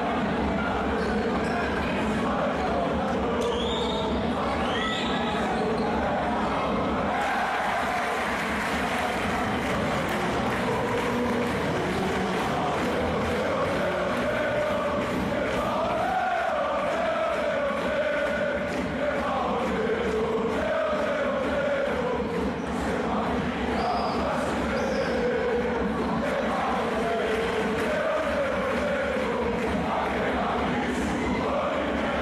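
Game sound from an indoor basketball court: the ball bouncing on the hardwood floor and the crowd chanting and singing in the stands, with sneakers squeaking a few times.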